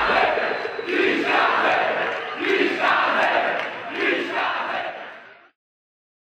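Crowd-like shouting in the backing music track, several shouts about a second apart, fading out to silence about five and a half seconds in.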